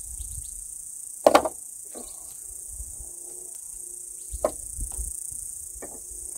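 A .22 rifle being handled while it is reloaded: one sharp clack about a second in, then a few lighter clicks of the action. A steady high buzz of insects runs underneath.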